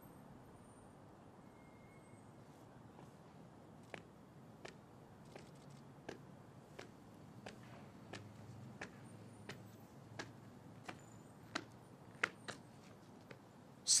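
Faint open-air hush broken by about a dozen single sharp clicks, irregularly spaced, through the middle and latter part.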